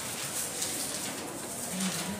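A bird cooing softly in short low notes near the end, over a steady background hiss.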